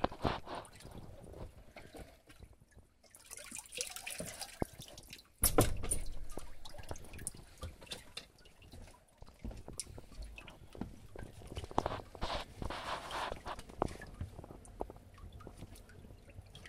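Water splashing and dripping as a hand gropes through a turtle enclosure to catch a turtle. The sound is irregular sloshing and drips, with a sudden loud splash about five and a half seconds in and another stretch of splashing near the end.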